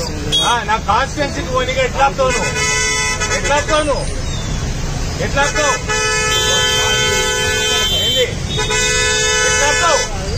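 A vehicle horn honking in three long, steady blasts, the longest lasting over two seconds, with voices talking at the start and between the blasts.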